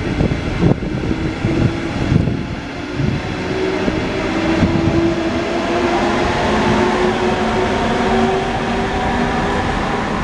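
Push-pull train of double-deck carriages pulling away, with wheel knocks over the rail joints in the first few seconds. Then the electric locomotive pushing at the rear passes, its traction drive giving steady tones that rise in pitch as it accelerates. The uploader takes it for a DB TRAXX AC locomotive.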